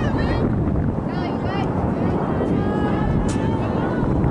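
Wind buffeting the microphone in a steady low rumble, with short, high-pitched shouts and calls from the players and sideline cutting through it several times.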